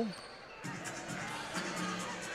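A basketball being dribbled on a hardwood court, with arena music playing underneath from about half a second in.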